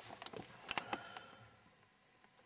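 A few faint clicks and light handling rustle in the first second or so, then near quiet.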